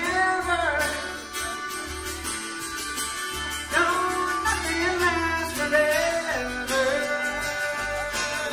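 Live string-band music: a fiddle carries the melody in phrases over acoustic guitar and upright bass.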